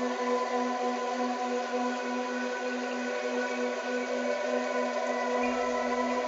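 Brainwave-entrainment meditation track: a sustained 396 Hz base tone carrying a 15 Hz monaural beat and isochronic pulse, layered with steady ambient drone tones over a soft hiss.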